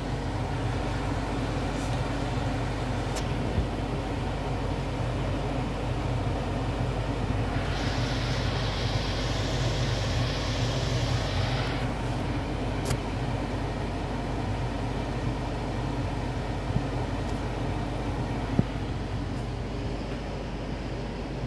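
Egg rolls frying in oil in a nonstick pan, with a steady sizzle over a low hum. The sizzle grows brighter and hissier for about four seconds starting some eight seconds in, and a few light clicks come through.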